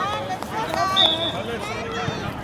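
Voices calling out across a youth soccer field, with a high-pitched child's shout about a second in.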